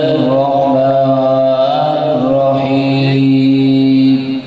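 A man chanting into a microphone, holding one long, ornamented note that wavers in pitch, over a steady low drone, in the style of naat or Qur'an recitation.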